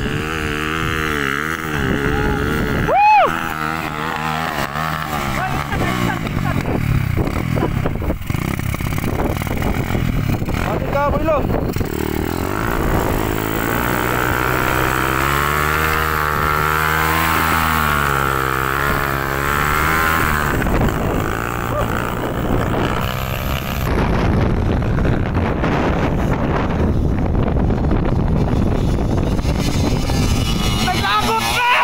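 Dirt bike engines revving up and down under load as the bikes climb a steep grassy hill, the pitch rising and falling again and again. There is a short sharp sound about three seconds in.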